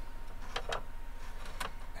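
A few light ticks and taps of a wooden brace and pencil being handled against a guitar back on the workbench, over a low steady hum.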